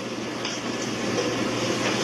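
Steady background noise, an even rushing hiss with a faint low hum under it, and no speech.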